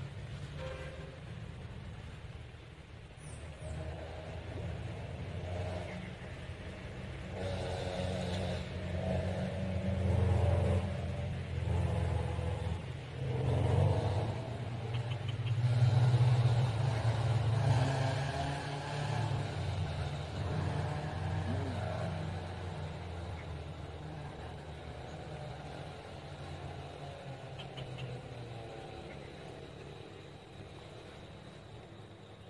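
A motor engine running off-screen with a low, steady hum. It grows louder to a peak about halfway through, then slowly fades.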